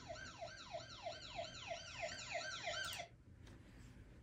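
Police car siren on a fast yelp, about three quick sweeps a second, heard faintly; it cuts off about three seconds in.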